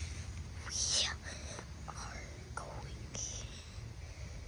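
A young boy whispering close to the microphone in breathy, hissy syllables, loudest about a second in, over a steady low rumble.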